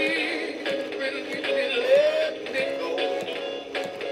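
Rocky the Rainbow Trout singing-fish plaque playing its built-in song through its small speaker: recorded music with a sung vocal line over a steady beat.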